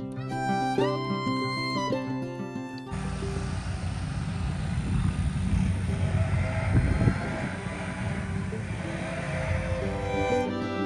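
Background string music, which cuts off about three seconds in. A gusty rumbling noise of wind buffeting the microphone outdoors takes its place.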